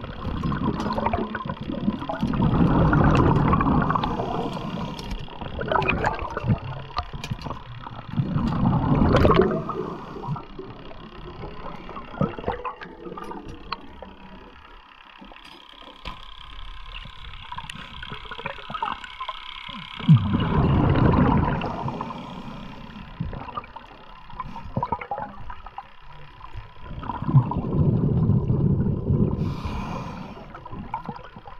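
Underwater water noise around a swimming spearfisher: four surges of rushing, bubbling water, each lasting a second or two, with quieter water noise and scattered sharp clicks between them.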